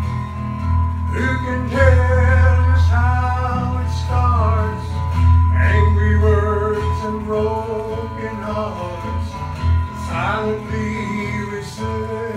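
Two acoustic guitars played together, accompanying a singing voice that comes in about a second in.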